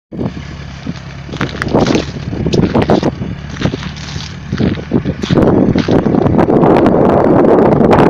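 Engines of six-wheeled all-terrain vehicles running under load with a steady low hum while a vehicle that has broken through the ice is pulled out by cable. Sharp knocks come through the first half, and the noise grows louder and rougher about halfway through.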